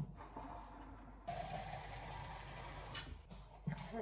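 Kitchen tap running for under two seconds, starting and stopping abruptly.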